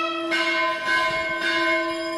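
Nadaswaram, the long South Indian double-reed wind instrument, holding one steady note over a constant low drone, without ornaments.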